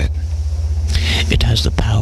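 A breathy whispered voice starting about a second in, over a steady low hum.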